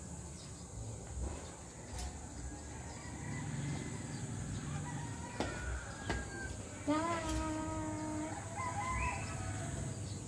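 A rooster crowing: one long crow about seven seconds in, with a shorter call just after. A few light clicks come earlier, over a low background rumble.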